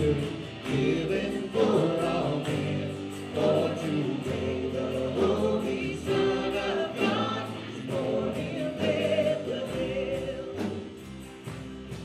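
A worship band playing a gospel song: male and female voices singing together with acoustic guitar, over a steady beat of light percussion.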